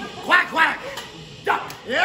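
A man's voice calling out two short yelping "wow" exclamations, then another loud shout starting about a second and a half in.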